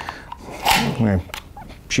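A short breathy vocal sound, then two light clicks as a Safariland holster is worked loose from its quick-release belt mount.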